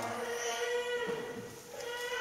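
A long sung note held steady for about a second and a half over an acoustic guitar accompaniment, fading before the next sung line begins near the end.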